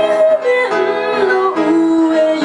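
A woman singing to her own upright piano accompaniment, her voice holding a note and then stepping down in pitch through the phrase.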